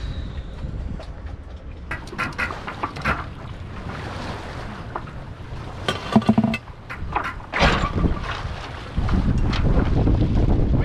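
Wind buffeting the microphone on a sailboat's deck, growing stronger near the end. Through it comes a run of short clicks, knocks and squeaks from the mast rigging and winch as lines are worked at the foot of the mast, with one louder knock late on.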